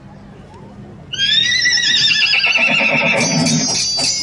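A loud horse whinny, a wavering call that slowly falls in pitch, starts about a second in and lasts about two seconds. It is a recorded effect played over the festival loudspeakers. Near the end, high shimmering bell-like tones come in.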